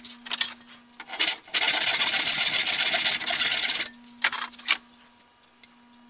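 A small electric power tool runs for about two seconds, starting about one and a half seconds in and cutting off abruptly. A few sharp taps and clicks of tools being handled on the bench come before and after it.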